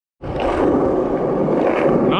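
A loud, steady rushing noise with no words. It cuts in just after the start.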